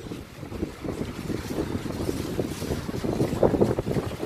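Wind buffeting the microphone of a handheld camera carried outdoors, a rough, uneven low rumble with faint street ambience under it.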